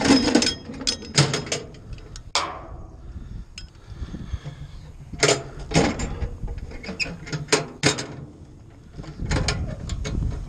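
Metal clanks, clicks and rattles of a ratchet strap's steel hooks and ratchet handle against a steel truck toolbox and its latch bracket, with one sharp metal clang that rings briefly about two and a half seconds in, over a steady low hum.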